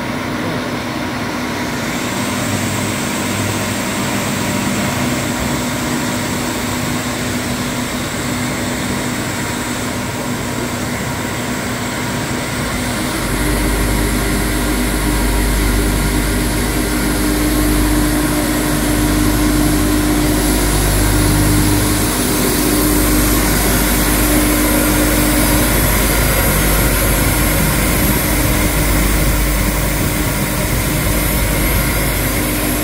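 Seydelmann K120 bowl cutter running, its electric drive motor and knife shaft making a steady machine hum and whine. About 13 seconds in the sound steps up, deeper and louder, and about 21 seconds in a higher whine is added.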